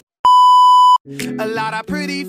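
A single loud, steady, high-pitched electronic beep lasting under a second, cutting off sharply. Music with singing starts right after it, about a second in.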